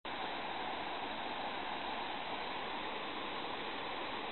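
Steady rush of falling water from a waterfall.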